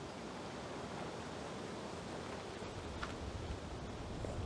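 Steady outdoor background hiss with low wind rumble on the microphone, growing stronger near the end, and a faint tick about three seconds in.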